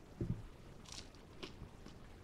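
A person biting into and chewing a crispy breaded plant-based chicken nugget: a soft thump of the bite, then a few faint, short crunches of the breading about a second in.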